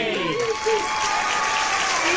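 Applause sound effect, a dense clapping hiss with a child's voice wavering over it.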